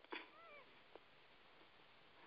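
Near silence, broken by one faint, short call that rises and falls in pitch about half a second in, and a faint click near the one-second mark.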